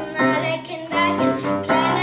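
Children's choir singing together, accompanied on an upright piano.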